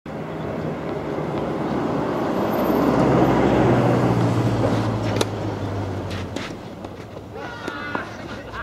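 A road vehicle going past, its engine and tyre noise swelling to a peak about three seconds in and then fading. Sharp tennis ball strikes come as the point is played: one about five seconds in and more near the end, with a short voice call among them.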